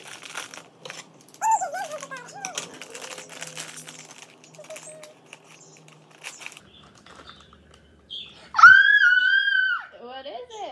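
Crinkling and crackling of a small plastic toy packet being torn open and handled. Near the end a young child gives one long, high-pitched excited squeal, the loudest sound.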